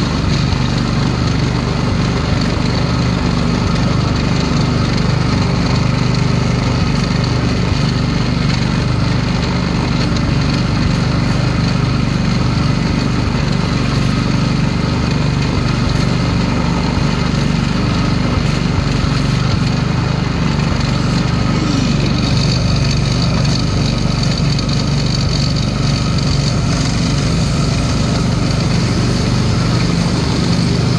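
Small engine of an antique-style ride car running steadily at cruising speed, with a constant low hum throughout.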